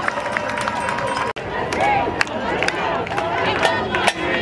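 Large outdoor celebrating crowd: many voices talking and shouting at once, with scattered handclaps. The sound drops out for an instant about a second in.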